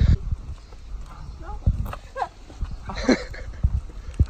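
Short, scattered calls from a mixed flock of peafowl and Muscovy ducks crowding round to be fed, with a louder call about three seconds in. Low wind buffets the microphone.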